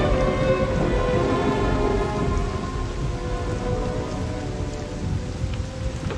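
Steady rain with a low rumble of thunder, as string music fades out over the first two seconds.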